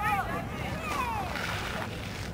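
Distant shouting voices of players and spectators across a lacrosse field, with one long call falling in pitch about a second in, over a low rumble of wind on the microphone.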